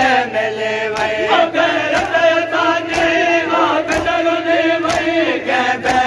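Men's voices chanting a Sindhi noha together, with long held notes, over sharp rhythmic slaps about once a second, typical of hands beating on chests in matam.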